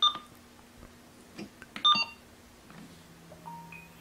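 Uniden SDS100 handheld scanner's keypad beeping as its buttons are pressed to key in the date: a short beep right at the start and another beep about two seconds in, over a faint steady low hum.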